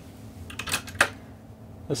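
A few small clicks, with one sharper click about a second in, over a faint steady low hum.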